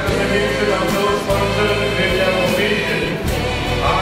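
Church choir singing, with a steady low accompaniment underneath.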